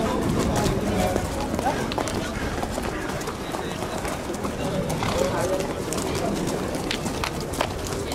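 Racehorses walking on a paved path, their shod hooves clip-clopping, over the chatter of people's voices.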